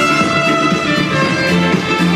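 Live pop band playing loudly, recorded from the audience: electric guitar and bass under a held lead melody line, with a steady beat.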